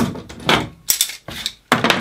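Bench clamps being released and a concealed-hinge drilling jig lifted off an MDF panel and set down on the workbench: a few sharp clacks and clatters of metal and plastic.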